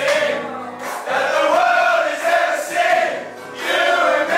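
A group of men singing a chant loudly together in phrases that rise and fall, with a few steady low notes underneath.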